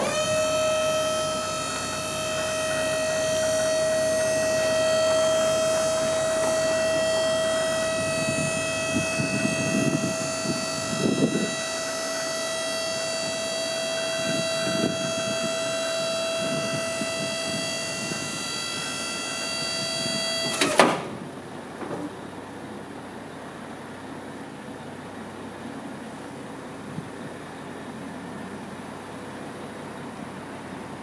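Trailer liftgate's hydraulic pump running with a steady whine while the 4,000 lb platform is raised, then cutting off suddenly about twenty seconds in.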